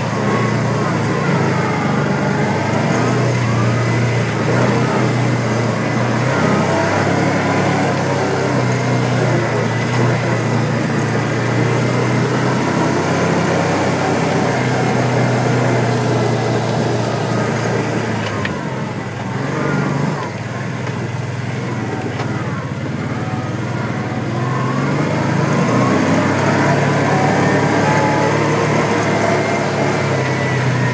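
Kawasaki Teryx 800 side-by-side's V-twin engine running under load, heard from on board while driving a rough off-road track. The revs dip about two-thirds of the way through, then climb back near the end.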